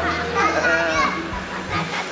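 People's voices with a child's high-pitched voice and laughter, mostly in the first second, over background music.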